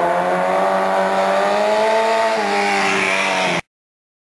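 Handmade mini motorcycle with a 250 cc four-cylinder engine, running at high, steady revs while riding. The pitch rises a little, then drops about two and a half seconds in, and the sound cuts off suddenly shortly before the end.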